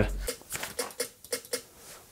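A low hum stops just after the start, leaving a quiet room with a few faint, scattered clicks of a computer mouse.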